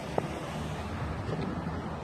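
Steady outdoor background of road traffic going by, with wind on the microphone and a single faint click near the start.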